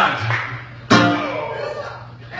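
A single chord strummed on an acoustic guitar about a second in, ringing and fading away.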